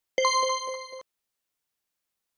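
Metallic ding of a logo sting sound effect: a ringing bell-like tone struck about four times in quick succession, fading a little, then cut off abruptly about a second in.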